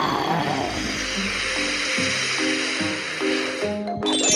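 Background music over a steady rushing noise of a tower block collapsing in a demolition, with a low rumble in the first half. The rushing noise cuts off abruptly at the end.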